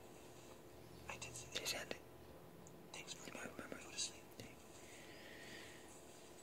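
Faint whispering in short, quiet phrases.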